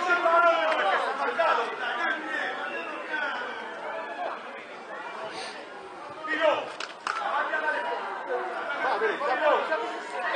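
Many voices talking and calling out at once, spectators and young players chattering around a football pitch, quieter for a few seconds in the middle.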